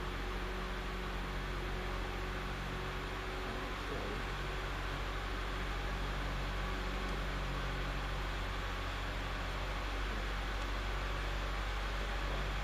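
Steady low mechanical hum with an even hiss behind it.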